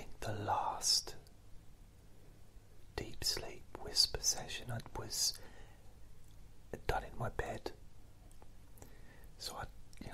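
A man whispering in short phrases with pauses between them.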